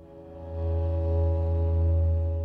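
String quartet of two violins, viola and cello holding one long sustained chord. It swells up over the first half second, and the cello's low note is the strongest.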